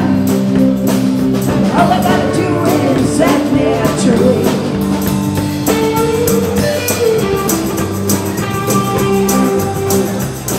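A live rock band playing electric guitars, keyboard and drums, with a lead singer heard in the first half. It is recorded with the levels set too hot.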